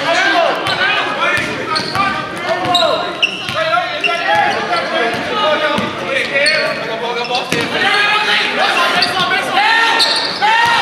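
Basketball dribbled on a hardwood gym floor, with many short high sneaker squeaks and shouting voices, all echoing in a large gym.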